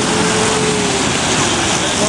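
Busy city street at a pedestrian crossing: a steady, loud wash of traffic noise with the murmur of a crowd. A faint drawn-out tone sinks slightly in pitch in the first second.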